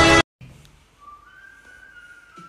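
Music cuts off abruptly a quarter second in. After a moment of quiet, a faint, thin whistling tone starts about a second in and holds, stepping up in pitch once.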